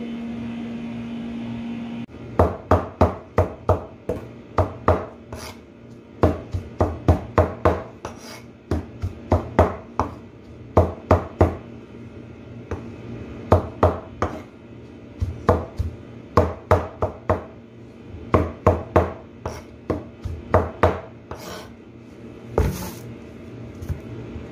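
Knife blade chopping saluyot (jute mallow) leaves finely on a cutting board, in runs of quick chops about three a second with short pauses between runs. A steady hum is heard at first and stops about two seconds in, as the chopping begins.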